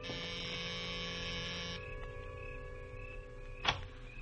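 A door buzzer sounds, one steady harsh buzz lasting nearly two seconds, over a held background music chord; a single click comes near the end.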